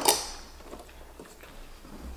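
A fork clinking on a plate at the start, fading quickly, then faint scattered small clicks of cutlery on plates during eating.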